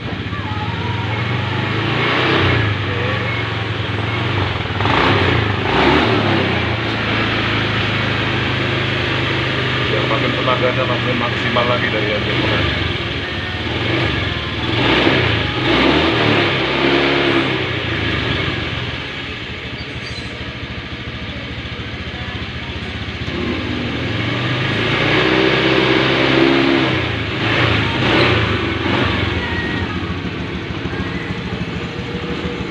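Honda scooter engine running steadily, revved up now and then, several swells in loudness, while it runs on injector cleaner fed through a hose into the fuel line to clear carbon from the injector nozzle.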